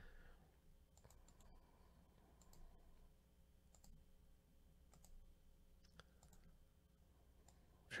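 Near silence: room tone with a few faint, scattered clicks of a computer mouse.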